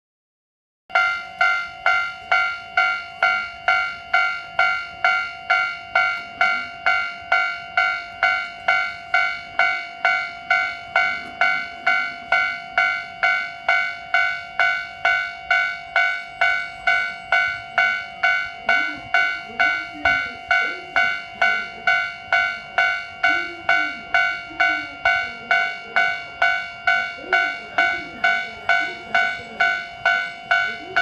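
Japanese railway level-crossing bell ringing continuously at about two strikes a second, the warning for an approaching train. It starts about a second in, and the recording is loud enough to break up and distort.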